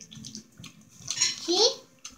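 Close-up wet chewing and mouth noises of someone eating a veggie sandwich. About a second in comes a loud wet smacking burst, ending in a short rising vocal sound.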